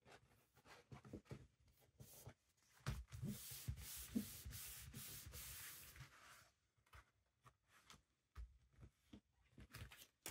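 Card and paper pages handled by hand on a table: soft rustles and light taps, then from about three seconds in a steady rubbing hiss for about three seconds as a sheet is smoothed and pressed flat.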